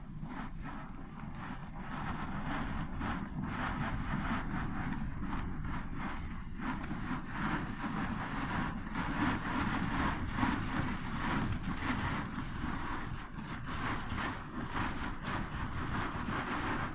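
Continuous low rumble and hiss with irregular crackles, from a river tug pushing through broken harbour ice, mixed with wind on the microphone.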